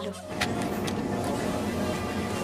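Steady noise of a shopping trolley being pushed along a supermarket floor, with store ambience, starting a moment in.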